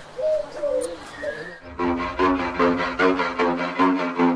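Cooing bird calls for about the first second and a half, each a short rising-and-falling coo. Then music starts: a quick run of evenly spaced notes, about four or five a second, over a held low note.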